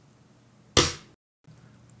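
A man's voice saying the single note name "F" about a second in, over faint room tone. A brief dead-silent gap follows, where the audio drops out at an edit.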